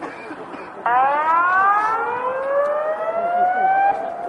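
Outdoor tsunami warning siren from the town's public loudspeakers, sounding over the bay as a tsunami warning is in force. It starts abruptly about a second in and rises slowly in pitch.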